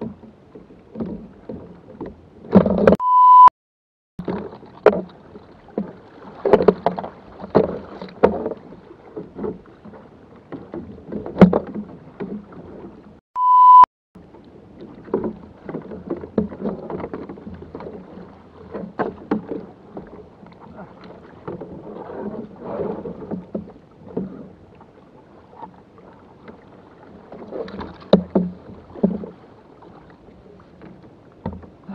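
Irregular knocks, bumps and rustling of gear being handled aboard a sea kayak, with water lapping at the hull. Two short, loud beep tones cut in, about three seconds in and again about fourteen seconds in, of the kind dubbed over swearing.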